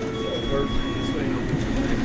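Fast-food kitchen noise at a fry station: a steady electronic alarm tone beeps on for about a second and stops about halfway through, over the constant rumble of kitchen equipment, with faint voices.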